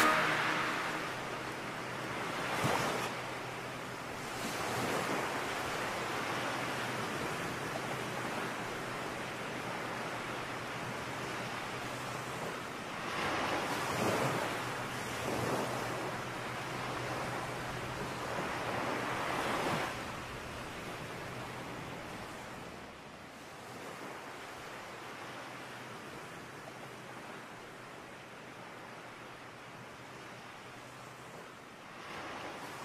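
Sea waves washing onto a sandy beach: a steady wash of surf with several louder surges, growing fainter over the last third.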